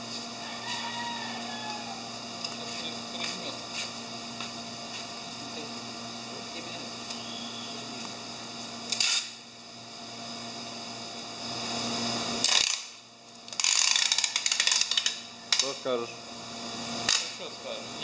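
Rustling and crinkling of a plastic bag liner being pressed and handled over a styrofoam shipping box, against a steady equipment hum. The handling gets loud and crackly in the last few seconds.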